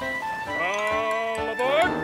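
A wavering, bleat-like wordless voice holds a note with heavy vibrato and then slides up in pitch near the end, as part of a silly children's theme tune.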